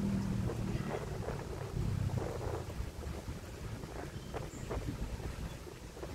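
Outdoor wind buffeting the microphone, a low rumble that is heaviest in the first couple of seconds and then eases off.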